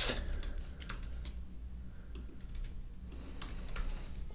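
Typing on a computer keyboard: light key clicks at an uneven pace, over a low steady hum.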